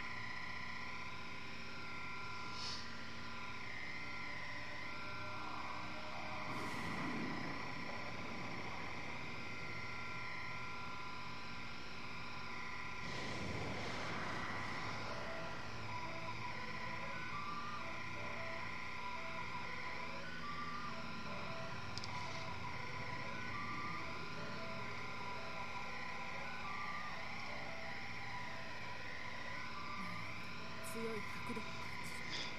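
Soundtrack of an anime episode: steady held tones with short repeated beeps in the second half, and two swelling whooshes about seven and fourteen seconds in.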